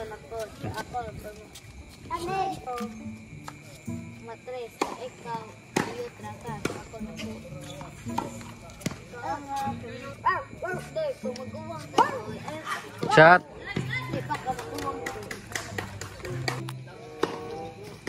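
Background music with a steady bass line over a tennis rally: several sharp racket-on-ball hits and bounces, with players' voices calling out now and then.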